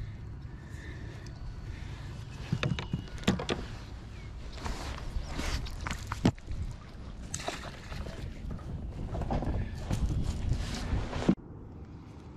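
Knocks, clicks and water splashes as a small bass is landed and handled aboard a fishing kayak, over a steady low rumble. The sound cuts off abruptly near the end.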